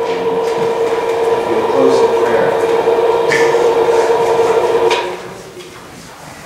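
Motorized projection screen's electric motor humming steadily as the screen lowers, cutting off about five seconds in when the screen reaches its stop.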